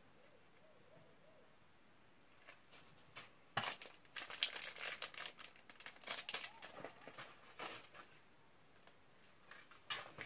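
Plastic shopping bag crinkling and rustling in irregular bursts as it is handled and rummaged through, starting a few seconds in and lasting about four seconds.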